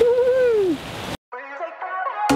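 A brief voice sound falling in pitch over a steady hiss, cut off abruptly a little over a second in. After a moment of silence, background music starts.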